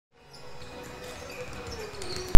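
Faint basketball-hall ambience: basketballs bouncing on the court, with distant voices, fading in at the start.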